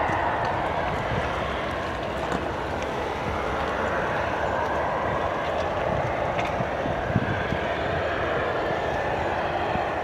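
Airbus A340-300's four CFM56 turbofan engines running at taxi idle, a steady rushing jet noise that stays even.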